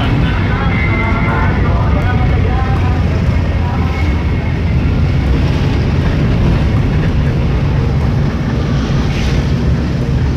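Steady low rumble of a Mitsubishi Colt Galant sedan's engine and road noise, heard from inside the cabin as it drives slowly along a street.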